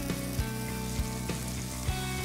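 Breaded chicken pieces and peppers sizzling steadily on the hot steel top of a propane gas griddle, under soft background music.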